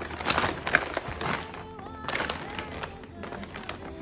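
A brown paper takeaway bag rustling and crinkling in a series of irregular crackles as it is opened and handled, over background music.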